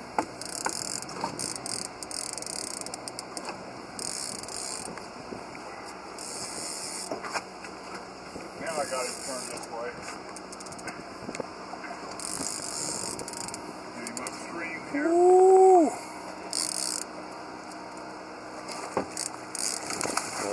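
Baitcasting reel clicking in repeated bursts of about a second each while a big catfish is fought against the current. About fifteen seconds in there is a brief loud rising-and-falling call.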